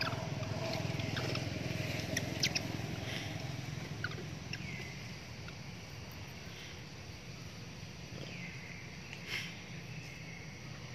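Outdoor ambience with a steady low hum, broken by a few sharp clicks and short, high, falling chirps.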